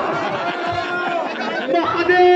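Several voices overlapping at once, with talk and drawn-out calls of men's voices mixed together.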